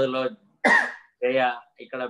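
A man speaking in Telugu, broken just under a second in by a short throat clearing.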